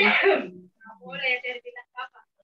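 Short, broken bursts of a person's voice over a video call, a loud one at the start and then softer fragments, with no clear words.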